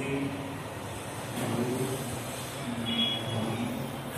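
Steady low background noise like road traffic, with a few faint, brief tones passing through it.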